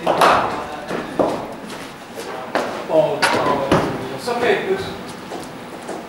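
Several sharp knocks of a cricket ball striking bat and netting in a large indoor practice hall, with people talking between them.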